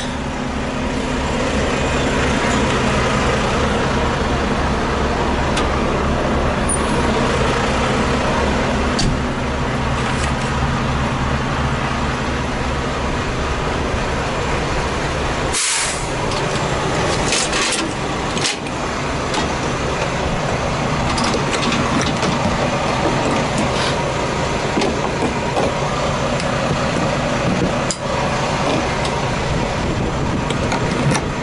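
Volvo VNL860 semi tractor's diesel engine idling steadily. About halfway through come a few short hisses of compressed air as the air lines to the trailer are handled.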